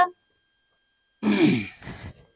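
Dead silence for about a second, then a short, breathy vocal sound from a person, falling in pitch.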